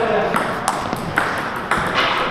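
Table tennis rally: the plastic ball clicking sharply off the bats and table about every half second.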